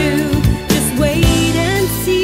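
Christian pop song: a melody that glides in pitch over sustained chords, with a couple of soft percussion hits.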